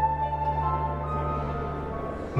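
A group of soprano recorders playing together in unison: one long held note, then a step up to a higher note about halfway through.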